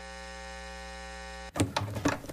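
A steady electronic hum with many overtones, cut off suddenly about one and a half seconds in by basketball court sound with sharp knocks.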